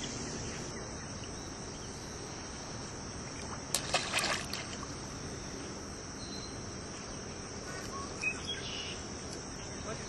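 Steady, high-pitched drone of insects calling in the summer air, with a short cluster of sharp sounds about four seconds in and a smaller one near the end.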